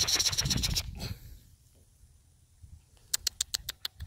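A person making quick mouth-click calls to summon rottweiler puppies: a rapid run of sharp clicks in the first second, then a quiet stretch, then about eight evenly spaced clicks near the end.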